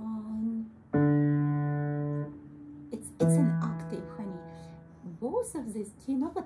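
Piano keys played: one low note held for just over a second and then released, cutting off sharply, then after a short gap a low bass note sounded together with higher notes, fading away over about two seconds.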